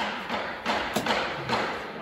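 A knife scraping and cutting around the edges of a freshly pressed sheet of composition on the wooden bench, with a few light knocks as the mould is handled, about half a second, one second and one and a half seconds in.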